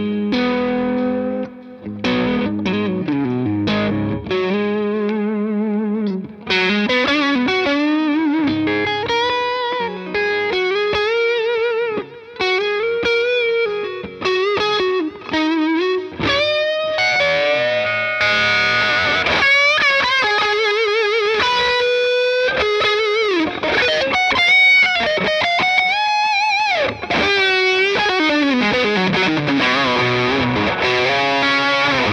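Electric guitar, a Fender Rarities Stratocaster with a quilted maple top and rosewood neck, played through an amp with some overdrive. It starts with sparser picked notes, then after about six seconds moves into fuller lead lines with string bends and wide vibrato, climbing higher in the second half. One player hears the tone as dark, perhaps from the rosewood fingerboard.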